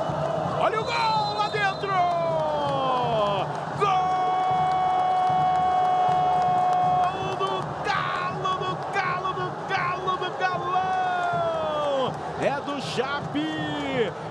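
Sports commentator's drawn-out goal shout: several long yells, one held about three seconds, each falling in pitch as it ends, over a cheering crowd.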